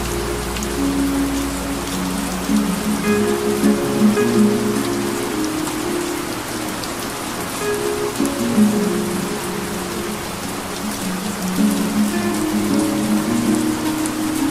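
Soft music of sustained low notes layered over a steady rain-like hiss; a low hum under the music stops about a second and a half in.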